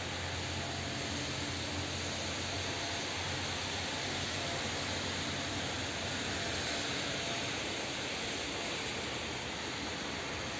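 Steady mechanical hum and hiss, its low hum tones easing off about halfway through.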